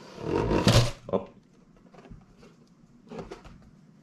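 A snug cardboard lid sliding up off a model-kit box: a loud rushing scrape that ends with a soft cardboard knock as the lid pulls free, within the first second.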